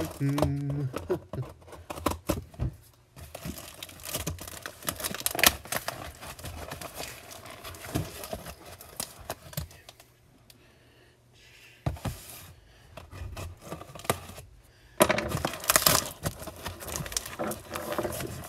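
Scissors cutting into clear packing tape on a cardboard box, with irregular crackling, scraping and tearing of the tape and rustling as the box is handled. There is a quieter pause near the middle, then louder crackling and tearing about three seconds before the end.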